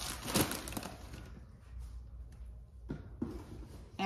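Plastic bags of shredded cheese crinkling briefly as they are put down, followed by a couple of light knocks of groceries being handled.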